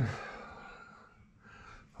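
A short pause in a man's talk: his voice trails off into quiet room tone, with a faint breath just before he speaks again.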